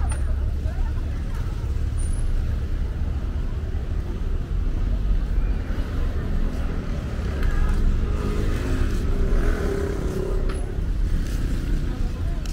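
Street ambience: a steady rumble of road traffic, with passers-by talking; their voices are clearest in the second half.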